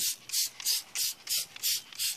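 Trigger spray bottle of foaming wheel cleaner being pumped rapidly, giving short sprays at about three a second.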